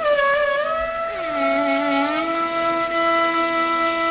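Carnatic bamboo flute (venu) holding long notes joined by gliding ornaments, with a second melodic instrument following about an octave below; the lower line slides up a step a little over a second in. No percussion is heard. The melody is in raga Abhogi.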